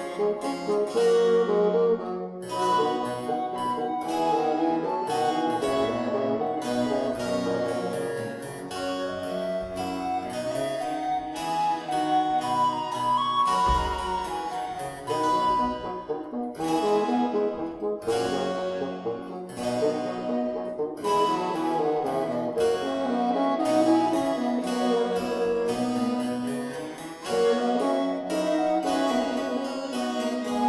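Baroque trio sonata for alto recorder, bassoon and continuo, played by alto recorder, bassoon, viola da gamba and harpsichord, with moving lines over a plucked harpsichord accompaniment.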